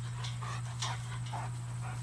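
Greater Swiss Mountain Dog giving a quick series of short, excited whines and yelps over a steady low hum.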